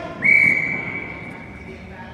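Referee's whistle: one sharp blast about a quarter second in, a steady high tone that tails off over about a second and a half.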